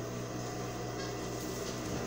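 A steady low machine hum with an even pitch, running without change.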